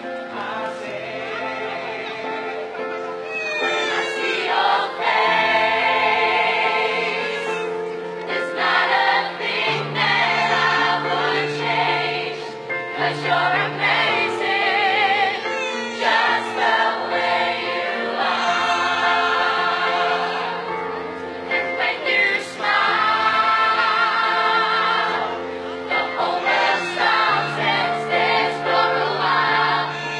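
A large mixed choir of men and women singing a song together over a backing track, with held low notes under the voices.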